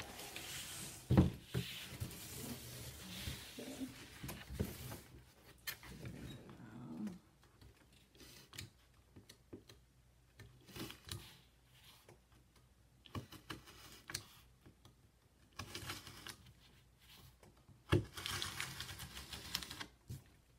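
A large sheet of corrugated cardboard being moved, laid down and pressed flat on a tabletop: rustling and scraping with scattered taps and knocks, busiest in the first several seconds, with a sharp knock about a second in and another near the end.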